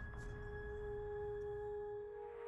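The opening of a movie trailer's soundtrack: a sustained, steady ringing tone with a few held pitches over a low rumble, like an ambient music drone.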